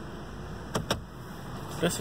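Steady low hum inside a car's cabin, with two sharp clicks close together a little under a second in.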